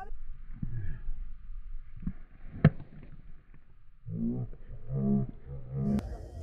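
A cricket bat hitting the ball: one sharp knock about two and a half seconds in, over low wind rumble on the microphone. Near the end come low, drawn-out voices.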